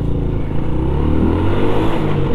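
Honda Biz 100's small single-cylinder four-stroke engine revving as the bike pulls away and accelerates. Its pitch climbs, dips about a second in, then climbs again.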